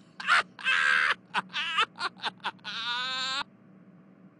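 A person laughing: a run of short laughs, ending about three seconds in with one longer laugh that wavers in pitch.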